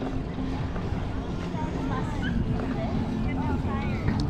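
Wind and ride rumble on a bike-mounted action camera's microphone while cycling on a paved path, with faint chatter of people nearby and short bird chirps over it in the second half.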